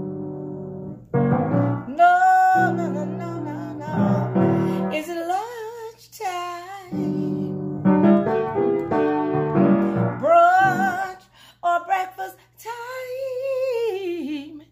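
A woman singing with piano chords, her voice bending through quick melodic runs, the little riffs singers love to do. Near the end she holds one long note that slides down as it fades.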